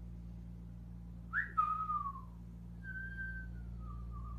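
A person whistling: a short note that rises and then slides down, then a longer held note that slowly falls in pitch, over a steady low hum.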